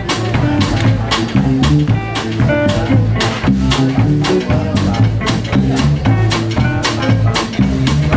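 Live blues band playing an instrumental passage: semi-hollow electric guitar, bass and drum kit, with drum hits keeping a steady beat under the moving bass line.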